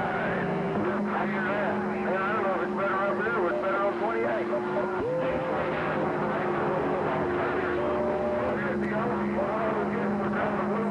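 CB radio receiver's speaker on a busy channel: steady heterodyne whistles from several carriers, with a new whistle joining about five seconds in, under warbling, garbled voices that are too far off-tune to make out, over a bed of static. The signal meter reads around S7 to S9, showing a strong signal coming in.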